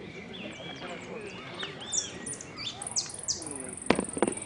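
Saffron finch (Argentine jilguero) singing: quick, high, downward-sweeping notes that pick up from about halfway in and run into a fast, sustained high trill near the end. A sharp click sounds just before the end.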